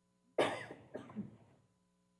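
A person coughing: a sudden harsh burst about half a second in, then a second, shorter one just after.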